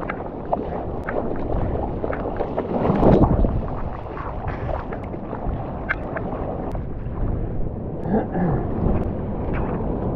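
Water splashing and sloshing around a longboard as it is paddled out through whitewater, with hand strokes in the water and a louder surge of water about three seconds in.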